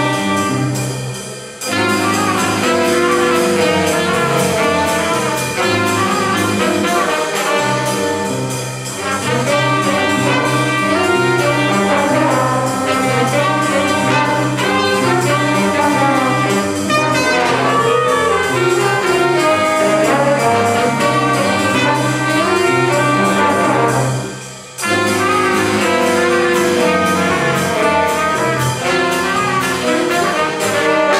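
Jazz ensemble playing: trumpets, trombones and saxophones over drums, piano and upright bass, with a steady walking bass underneath. The band drops out briefly twice, about a second and a half in and again about five seconds before the end.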